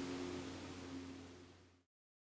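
Faint room tone: a low steady hum with a couple of faint held tones and hiss, fading out to silence about one and a half seconds in.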